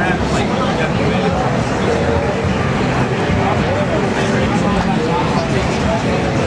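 Crowd chatter: several people talking at once, none clearly, over a steady low rumble.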